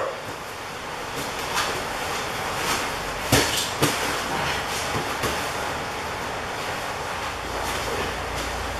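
Close grappling on floor mats: gi fabric rustling and bodies shifting and scuffing against the mat, with a few sharp thumps, the loudest about three seconds in.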